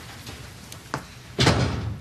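A door being pulled shut: a short click, then a loud thud as it closes about one and a half seconds in.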